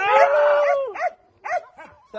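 Belgian Malinois puppies whining and yelping in excitement as they jump up on people: one long, level whine for most of the first second, then a few short yelps.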